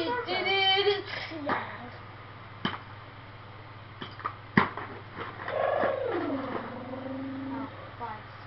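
A child's voice in the first second, then a few sharp clicks. About five and a half seconds in, a drawn-out vocal sound effect falls in pitch and then holds low for about two seconds.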